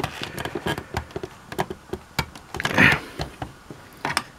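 Hard plastic parts of a toy carbon-freezing-chamber playset clicking and knocking as its lift mechanism is worked by hand, with one longer, louder scrape about three seconds in.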